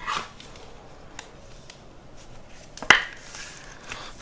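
Trading cards being handled and slid against each other and against plastic sleeves: a soft rustle at the start and a sharp click about three seconds in.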